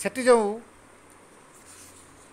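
A man speaks one short word at the start, then pauses; only faint room noise follows, with a soft brief hiss near the end.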